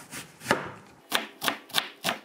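Chef's knife cutting an onion on a wooden cutting board. The loudest stroke comes about half a second in, then chopping strokes follow at about three a second in the second half, the blade knocking on the board each time.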